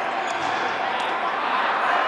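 Rattan-style sepak takraw ball kicked during a rally, a sharp hit about halfway through, over a steady murmur of spectators talking.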